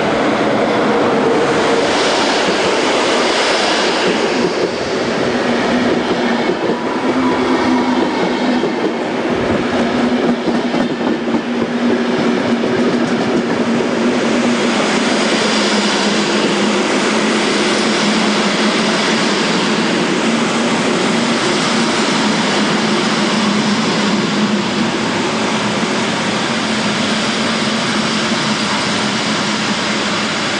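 Passenger coaches of a locomotive-hauled train rolling past at close range: a loud, steady rumble of steel wheels on rail with some clickety-clack over the rail joints. A low tone under it slowly falls in pitch as the train slows.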